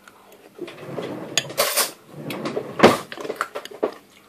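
A spoon scraping and knocking in a bowl of salad as it is scooped out: a run of short scrapes and clatters, the loudest about three quarters of the way through, then a few small clicks.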